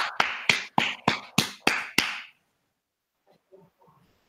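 Hand clapping: about eight sharp claps at an even pace of three to four a second, stopping a little after two seconds in.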